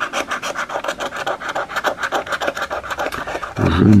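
Scratch-off lottery ticket being scraped with a metal edge: rapid back-and-forth strokes rasping through the latex coating, several a second.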